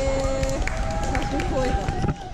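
Indistinct voices, some held on long steady notes, over a constant low rumble.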